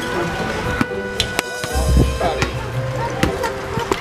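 Music with steady held notes, over a string of sharp knocks and clicks from hands, feet and the camera bumping on a metal playground climbing frame. There are low thuds about two seconds in and a few children's voices.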